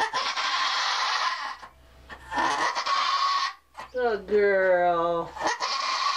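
Nigerian Dwarf doe in labour crying out while she pushes: two long, hoarse, breathy bleats, then a clearer drawn-out bleat about four seconds in that drops in pitch and holds.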